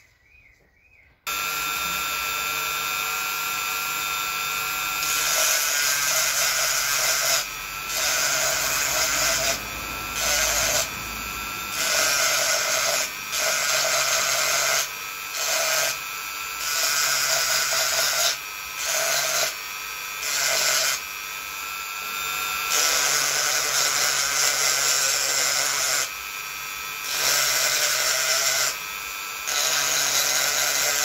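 Flexible-shaft rotary tool switched on about a second in, running with a steady high whine. From about five seconds on, the bit grinds into a coconut shell in repeated short passes, the sound growing louder and rougher with each cut and falling back between them.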